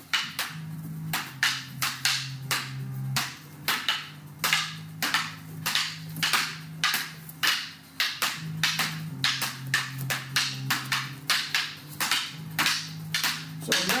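Tape-wrapped rattan fighting sticks clacking together as several pairs trade double-stick strikes. The sharp cracks come about two to three a second and often overlap.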